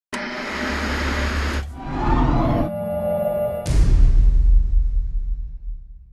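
Produced radio-intro sound effects: a rushing noise, a swoosh, a short electronic tone, then a sudden deep boom a little over halfway through that fades away.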